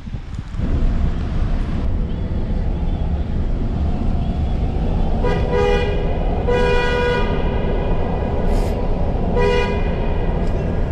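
Car horn honking three times, starting about halfway through: a short honk, a longer one, then another short one near the end. Under it, the steady rumble of road and engine noise inside a car driving through a road tunnel.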